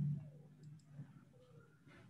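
Faint computer mouse clicks, one about a second in and a sharper one near the end, over a low hum that fades away at the start.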